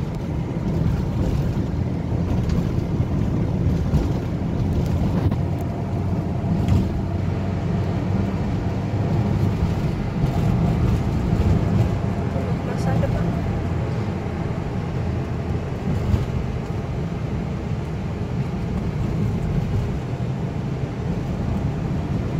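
Steady low rumble of a car heard from inside its cabin while driving: engine and tyre noise on the road.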